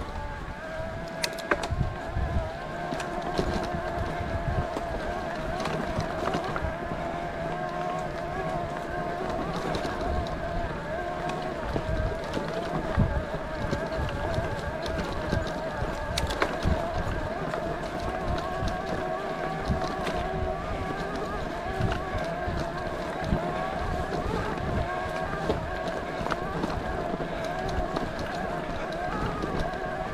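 Electric mountain bike's motor whining steadily as the rider pedals along a dirt trail, with tyres rolling on gravel and scattered clicks and rattles from the bike. There is low wind rumble on the camera microphone.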